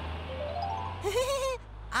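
A cartoon character's wordless voice: a rising 'hmm' that turns into a wavering, bleat-like note, over a low steady hum.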